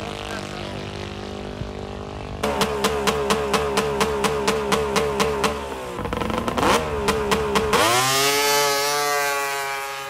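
A steady engine drone, then a snowmobile engine at the drag strip start line revved in quick regular pulses, about four a second. It then revs up and launches, its pitch climbing as it pulls away, and fades toward the end.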